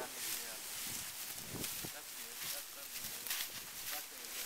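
Dry hay and straw rustling and crunching as a small child walks across it carrying an armful of hay, in a string of short, uneven crackles, with faint voices in the background.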